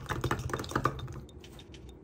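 Metal utensil tapping and scraping against the inside of a glass mason jar while stirring melted soft plastic: a quick run of light clicks that thins out and fades after about a second.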